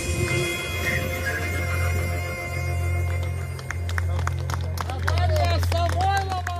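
The last notes of a song played through outdoor PA speakers die away over a steady low rumble. A small group of people then starts clapping about halfway through, and voices call out near the end.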